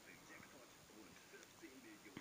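Faint, indistinct speech in the background, barely above room tone.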